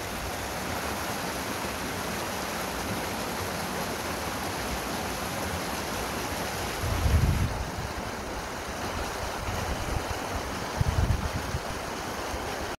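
Steady outdoor rushing noise with wind buffeting the microphone, swelling low and strong twice, about seven and about eleven seconds in.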